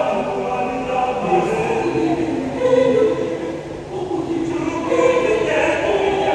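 Mixed choir of men and women singing in harmony, holding long sustained chords.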